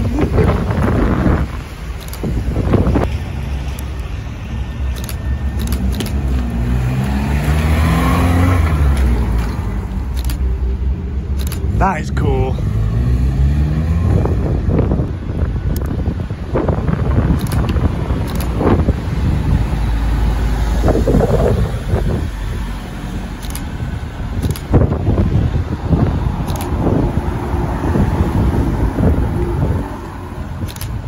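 Modified cars pulling away one after another on a wet road, engines revving up and falling away as each one passes.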